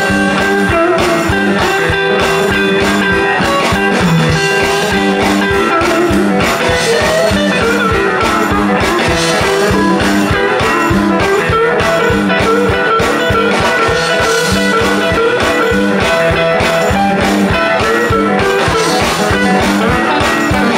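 Live blues band playing an instrumental passage: guitars over a steady drum beat, with no singing.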